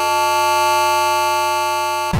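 Electronic music: a single synthesizer note held steady with no drums, slowly getting quieter.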